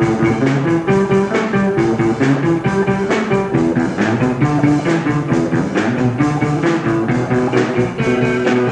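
A small rock band playing: electric guitars over a drum kit beat, with regular drum hits throughout.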